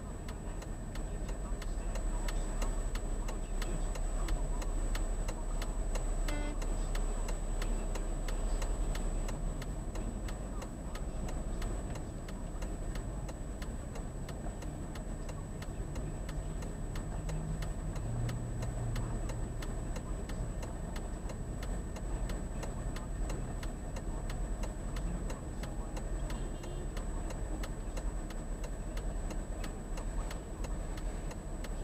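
A car's indicator relay clicking steadily, about three clicks a second, inside the cabin of a car idling at a stop. Under it runs a low engine hum and a faint, steady high-pitched whine.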